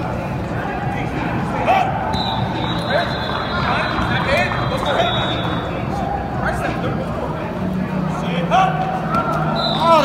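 Coaches and players calling out and shouting in a large, echoing indoor hall, with a few sharp thumps of footballs being caught. A thin high steady tone sounds for a few seconds in the first half.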